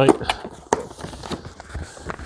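Cardboard product box being pried and torn open by hand: scattered crackles and scrapes, with one sharp click about three-quarters of a second in.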